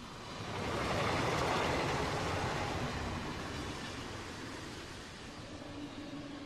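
Train running on rails, its rumble and rushing rail noise swelling over the first second and then slowly fading.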